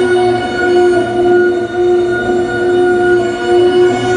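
Modified crystal radio's audio output giving a steady electronic drone of stacked tones, with a low hum beneath. It is interference picked up from the computer screen in front of it, which the owner calls an interference pattern or resonant harmonic.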